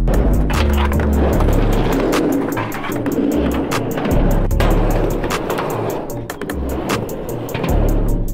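Skateboard wheels rolling and rumbling across a ramp under a music track with a steady beat and bass line.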